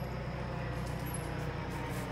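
Steady low background hum of an outdoor evening yard, with no distinct event standing out.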